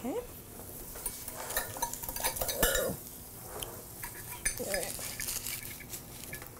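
Light clinks and scrapes of kitchen utensils against pots and pans as cubed butter is put into a saucepan to melt, in scattered short bursts.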